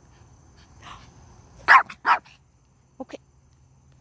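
Yorkshire terrier barking twice, less than half a second apart, about two seconds in: a small dog's impatient demand for the ball to be thrown.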